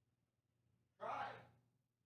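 A person's short sigh, one breathy exhale about a second in; otherwise near silence.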